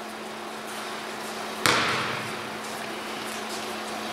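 A basketball struck once on a free throw: a single sharp knock about a second and a half in, followed by a short echo in the gym. A steady low hum runs underneath.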